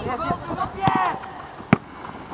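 A football kicked twice during play, two sharp thuds with the second, near the end, the louder, over shouting voices from players on the pitch.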